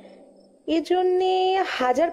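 A voice in an audio drama holds one long, drawn-out vowel sound, starting after a short pause, over a faint steady background bed of chirping crickets.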